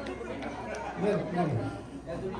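Several people chatting indistinctly in a room.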